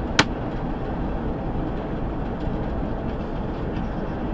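Steady rumble of a truck cruising at highway speed, heard from inside the cab: engine and tyre noise. A single sharp click sounds a fraction of a second in.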